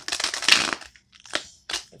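Tarot deck being shuffled by hand: a rustling burst of cards slipping against each other for just under a second, then two short flicks of cards.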